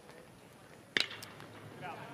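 A college baseball batter's metal bat hitting a pitched ball: one sharp, ringing crack about a second in, over quiet ballpark ambience.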